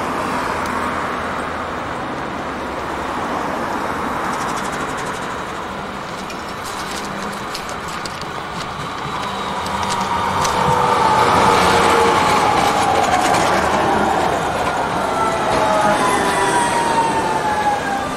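A Croydon Tramlink Bombardier CR4000 tram runs along street track and passes close by. It makes a whine that slowly falls in pitch, loudest about two thirds of the way through. Near the end a car passes.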